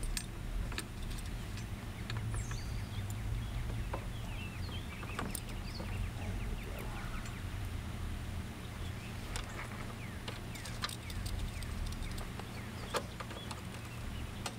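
Scattered small clicks and rattles from a nylon safety strap and its metal clip being handled and fastened around an e-bike's rear frame, over a steady low background rumble with a few faint bird chirps.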